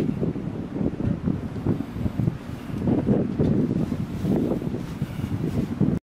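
Wind blowing across the microphone on a moving ship's deck, a low gusting rumble that keeps swelling and dropping.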